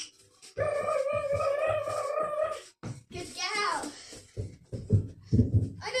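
A child's voice holds a long, drawn-out "good" on one pitch for about two seconds, then a quick run of soft thudding footfalls on carpet near the end as a child runs and hops over low poles.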